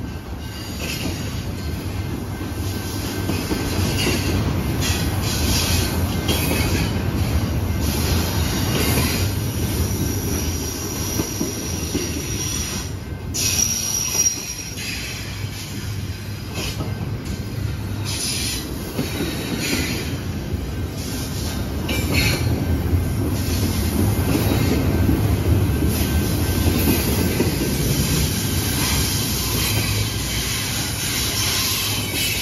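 Double-stack intermodal container train rolling past: steady rumble of the well cars' wheels on the rails, with a high wheel squeal that comes and goes, clearest about ten to fourteen seconds in.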